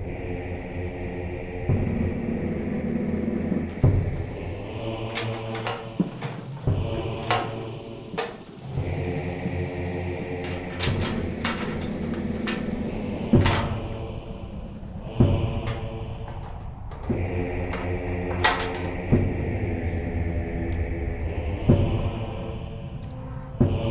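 Background film music of sustained, droning chords that swell and fall away in long sections, with about a dozen sharp knocks or clanks scattered through.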